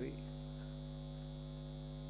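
Steady electrical mains hum in the microphone feed: a low, even buzz made of several fixed tones.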